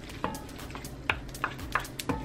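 Two wooden spoons tossing spaghetti in an enamelled cast-iron pan: soft scraping and a handful of sharp clicks of wood against the pan, over a faint sizzle.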